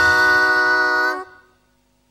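The song's last note, sung and held in unison by the cartoon girls' voices, steady for just over a second, then fading away to silence.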